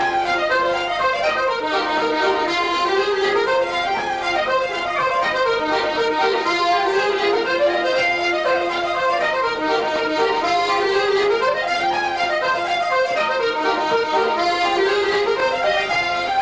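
Irish traditional dance music played on button accordion and fiddle: a steady, busy tune in phrases that rise and fall and repeat.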